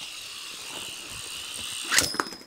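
Beyblade spinning top whirring steadily on a foam mat with a high hiss, then a sharp clack at the very end as another Beyblade strikes it from the side, a tap meant to knock a stuck burst stopper closed.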